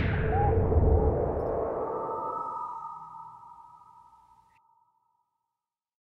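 Network logo sound sting: a whoosh and deep rumble that settle into a sustained ringing tone, fading out to silence over about five seconds.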